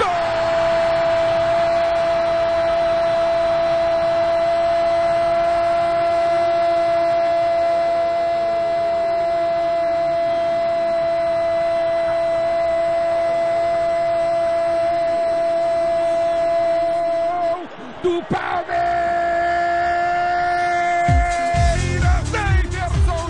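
Radio football commentator's drawn-out goal cry: one long 'gooool' held on a single steady high pitch for about seventeen seconds. After a short break for breath comes a second, shorter held note. A station jingle with a beat comes in near the end.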